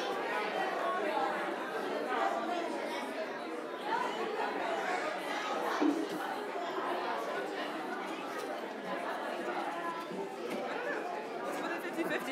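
Congregation chatter in a church sanctuary: many people talking at once, overlapping voices with no single speaker standing out.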